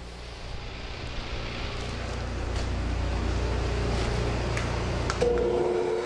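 Shop dust collector switched on, its motor and fan coming up to speed: a steady rushing hum that grows louder over the first few seconds and then holds. A steady higher-pitched tone joins about five seconds in.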